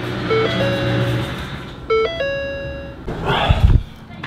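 Ford car's dashboard warning chime, a three-note pattern of a short low tone, a higher tone and a longer held tone, sounding twice about 1.6 s apart, while a low hum stops about a second in. Near the end comes a rustle and a heavy thump as the person gets out of the car.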